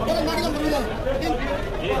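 People talking over one another: busy chatter of several voices.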